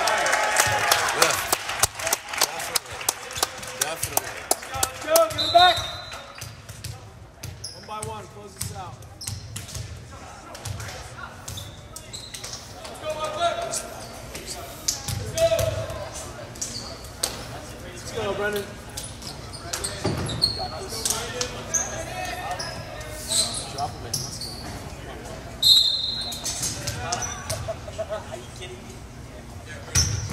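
Gym sounds during a break in volleyball play: a short cheer at the start, then a volleyball bouncing on the hardwood floor, a few sneaker squeaks, and crowd and player chatter in the hall.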